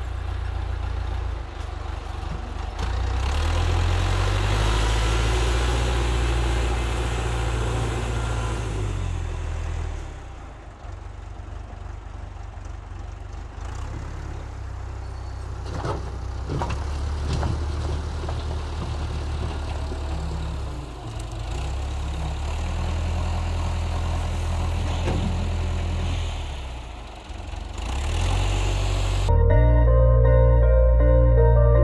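Massey Ferguson MF50E backhoe loader's Perkins diesel engine running under load as the machine works the dirt pad, its sound rising and falling with the throttle, loudest in the first third. A few sharp knocks come about halfway through.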